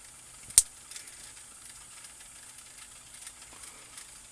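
Faint steady hiss of recording noise, with one sharp click about half a second in.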